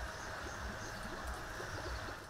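Outdoor ambience at a lake's edge: a steady hiss with a low, uneven rumble beneath it.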